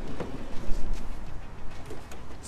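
The sliding side door of a Winnebago Travato camper van being rolled open along its track, with a few light knocks and rattles. A steady low wind rumble on the microphone runs underneath.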